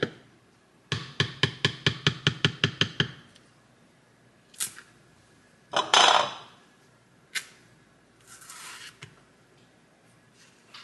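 A spoon knocked rapidly against the rim of a plastic blender cup, about a dozen quick taps, to shake off what it holds. A few clicks follow, then a louder rustle about six seconds in as a banana is taken from a glass bowl, and a softer rustle near the end.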